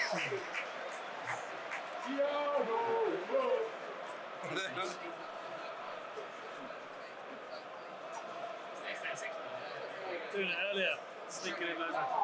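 Indistinct men's voices talking in short bursts over a steady background haze of football stadium crowd noise.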